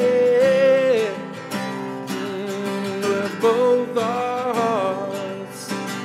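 A man singing long held notes that slide from one pitch to the next, over a strummed acoustic guitar.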